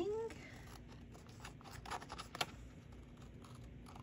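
Small scissors cutting a paper label, a few quiet snips around the middle.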